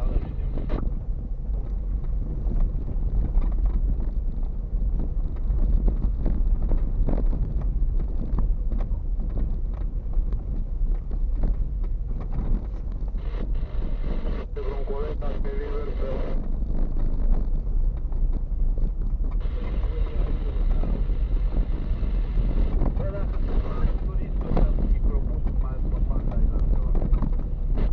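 Car cabin noise while driving on an unpaved, rutted dirt road: a steady low rumble of engine and tyres with frequent knocks and rattles from the suspension and body as the car goes over the bumps and potholes.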